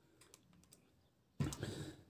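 Light plastic clicks from a Syma toy quadcopter being handled, then about one and a half seconds in a short clatter as its plastic frame is set down on a table.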